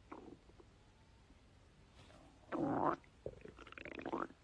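A man's stomach gurgling in a few croak-like bouts, the loudest about two and a half seconds in, that he likens to frogs croaking in a swamp.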